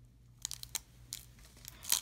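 Wax-paper wrapper of a 1990 Topps football card pack crinkling and crackling as fingers pry open its folded end, in a few small scattered crackles beginning about half a second in.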